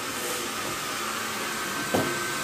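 A small electric blower running steadily, giving an even whooshing hiss, with a brief click near the end.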